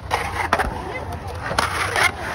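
Skateboard wheels rolling on a concrete bowl, with several sharp clacks of the board and wheels striking the concrete, the loudest about a quarter of the way in and at the end.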